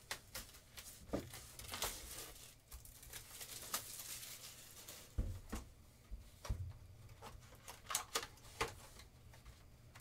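Cellophane wrapping rustling and tearing as a sealed cardboard card box is unwrapped and handled, with scattered clicks and two dull knocks about halfway through as the box bumps the table.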